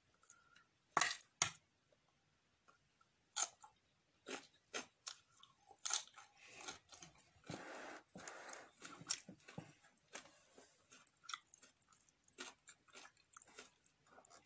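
Biting and chewing a crisp lettuce-leaf wrap filled with tuna: two loud crunching bites about a second in, then irregular crunchy chewing.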